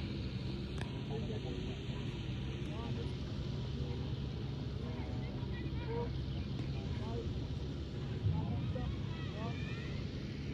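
Steady low outdoor rumble with faint, scattered voices and short chirps over it.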